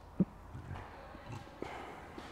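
A sharp low thump just after the start, then a few soft knocks and rustles over quiet room tone.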